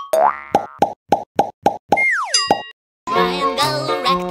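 Cartoon sound effects: a quick upward swoop, then a run of about seven short plops, then a falling whistle-like glide with a high twinkle. After a brief gap, a bright children's song starts about three seconds in.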